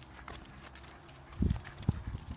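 Several basenjis' claws ticking on asphalt as the dogs walk along on leashes, with two low thumps near the end.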